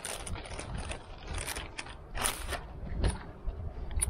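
Plastic pizza wrapper crinkling and rustling as a frozen pizza is slid out of it by hand, in irregular crackles and scrapes.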